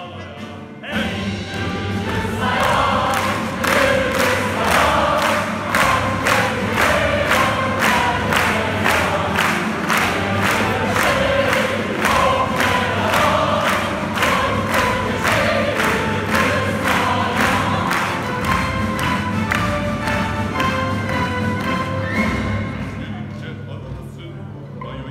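Orchestra, choir and vocal soloists performing a lively piece while the audience claps along in time, about two claps a second. Music and clapping start about a second in and fade near the end.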